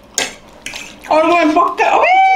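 A couple of light clinks of cutlery and plates, then, about a second in, a loud, high-pitched voice crying out excitedly in long held notes.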